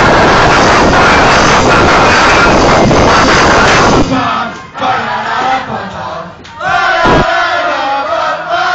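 Live rock band playing loudly in an overloaded, distorted recording, stopping abruptly about halfway through. Then the crowd shouts and cheers.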